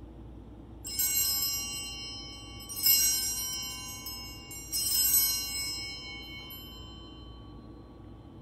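Altar bells rung three times, about two seconds apart, each ring a bright cluster of high metallic tones that dies away slowly. They mark the elevation of the chalice at the consecration.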